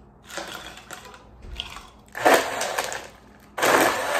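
Ice cubes clattering into a plastic blender jar, then a personal blender pulsed twice, its blades crushing the ice in loud grinding bursts.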